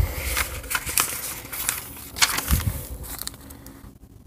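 Paperback book pages being turned and pressed flat by hand: paper rustling and crinkling with many light crackles, loudest at first and fading toward the end.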